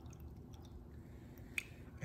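Water poured from a jug into a plastic container, a faint trickle that tails off, with one small click about one and a half seconds in.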